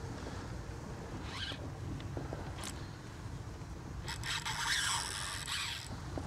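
Spinning reel's drag buzzing as a hooked black drum pulls line off, once briefly about a second in and then for about two seconds near the end, over a steady low rumble.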